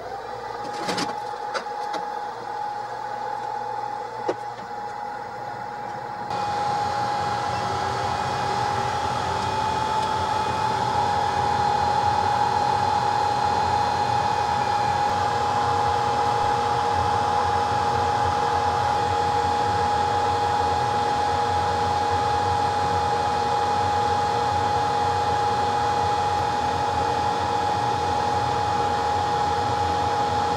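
Hot-air blower and fans of a Zhuomao ZM-R5860C BGA rework station running during chip removal: a steady rush of air with a high fan whine. A few clicks come near the start, and the airflow steps up louder about six seconds in, then holds steady.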